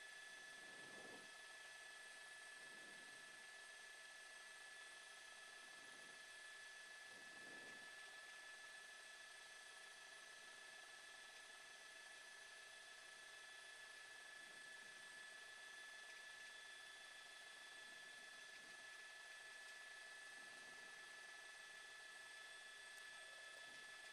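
Near silence: a faint steady hiss with a few thin steady whining tones, like line noise on an open audio feed.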